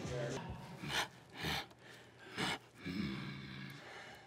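A person's three short, sharp breaths, all within about a second and a half, followed by a brief low voice.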